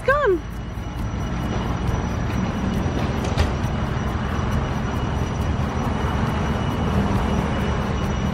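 Steady low rumble of a car's idling engine, heard from inside the cabin. A single click sounds about three seconds in.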